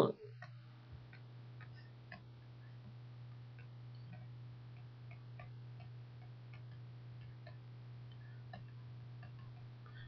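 A quiet pause with a steady low hum and a scattering of faint small ticks.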